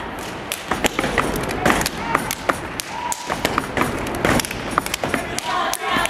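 Stepping: feet stomping on a stage floor and hands clapping, a fast, uneven run of sharp hits.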